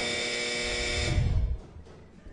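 A steady electrical buzz with many overtones from the chamber's microphone and sound system, fading out about a second and a half in, with low thuds as the microphone is handled.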